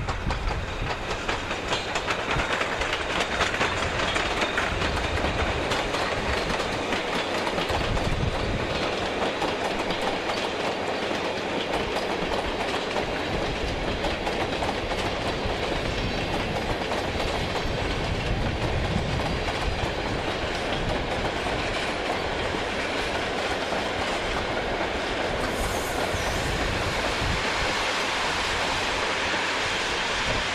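An Intercity train hauled by an NS 1200-class electric locomotive rolling past with a steady running noise and repeated clicking of its wheels over the track.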